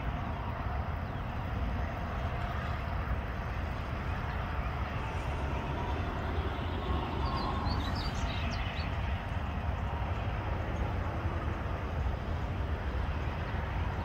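Steady outdoor background noise with a low rumble, with a brief cluster of faint high chirps a little past the middle.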